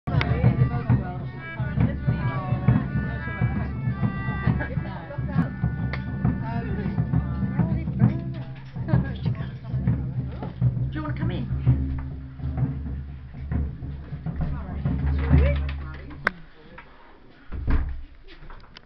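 A crowd talking over instrumental music with drum beats, with held instrument notes in the first half. Near the end the sound drops away abruptly, then there is one brief loud burst.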